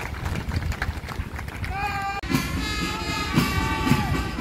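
Open-air crowd noise with scattered claps, then about halfway through a marching band strikes up: steady held wind notes over drum beats.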